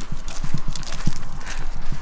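Irregular soft knocks of footsteps on a paved road, mixed with handling bumps on a handheld camera's microphone, over a low rumble.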